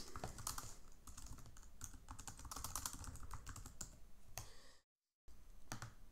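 Typing on a computer keyboard: a quick, faint run of key clicks, broken by a short moment of dead silence near the end.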